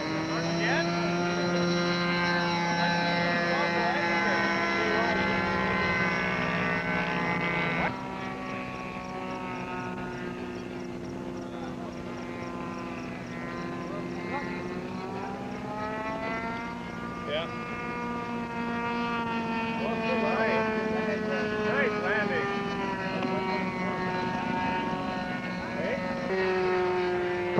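Radio-control model airplane engines running at high revs, a steady buzzing tone whose pitch slowly rises and falls with throttle and the plane's passes. Louder for the first eight seconds, then drops in level and carries on.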